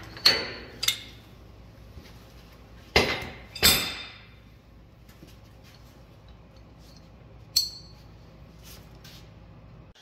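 Steel hand tools striking and clinking against the steel parts of a tractor's three-point hitch: about five sharp, ringing metal knocks, the loudest near the start and about three seconds in, as a stubborn cotter pin is worked out of a hitch nut.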